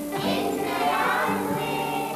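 Music: a group of voices singing a song over instrumental backing, with long held notes.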